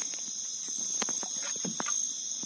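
Night insects keeping up a steady high-pitched chorus, with a few faint clicks through it.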